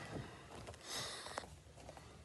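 A man breathing hard after a fast round of kickboxing strikes: two breaths about a second apart, with a faint click between them.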